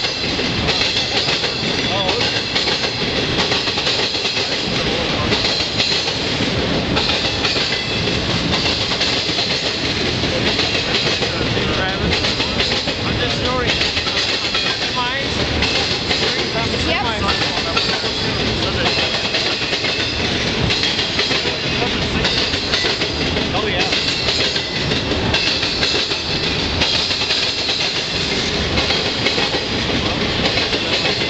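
Wheels of a BNSF intermodal train's trailer-carrying flatcars banging hard over a rail crossing diamond, a continuous loud rapid clatter of wheel impacts as the cars roll past.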